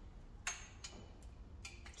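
Faint, sharp plastic clicks of wiring-harness connectors being handled and snapped onto engine sensors, about five in two seconds, the loudest about half a second in.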